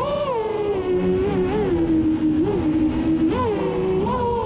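Six-inch FPV quadcopter's F80 2200KV brushless motors and propellers whining, heard from the camera on the quad. The pitch falls as the throttle comes off over the first two seconds, holds low, then rises briefly twice, the second time near the end, with throttle punches.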